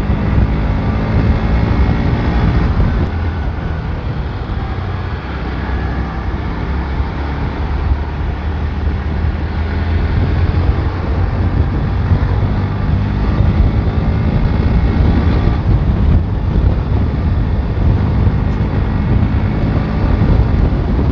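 Bajaj Pulsar NS125's single-cylinder engine running at steady road speed, mixed with heavy wind noise buffeting the bike-mounted camera microphone.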